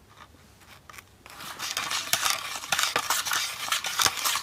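Small plastic spoon stirring and scraping Nerunerunerune candy paste around a plastic tray well, in fast scratchy strokes that start after a quiet second or so.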